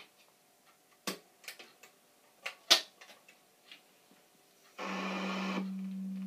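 Clicks and knocks as 45 rpm records are loaded onto the spindle of an RCA Victor EY2 battery-powered 45 record player, the loudest about three seconds in. Near the end the player starts: a short burst of rushing noise, then a steady low hum.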